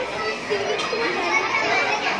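Many children's voices talking and calling out at once, a steady classroom hubbub with no single voice standing out.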